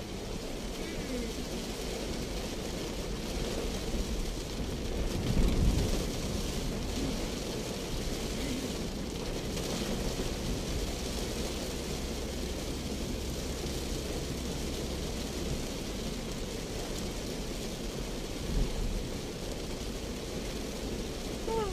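Heavy rain beating on a moving car's roof and windshield, heard from inside the Daihatsu Terios cabin, over steady road and engine noise. A louder low thump comes about five and a half seconds in, and a shorter one near the end.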